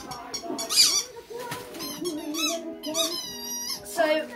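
A dog's squeaky ball toy squeaking several times in quick succession as a small dog chews it, the squeaks coming thickest in the second half.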